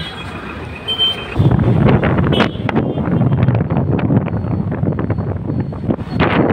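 Busy road traffic with motorbikes and auto-rickshaws; from about a second and a half in, a much louder, rough low rumble takes over, like a vehicle passing close.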